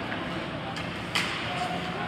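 Ice hockey game in an arena: steady rink noise with indistinct voices, and one sharp crack of a puck impact about a second in.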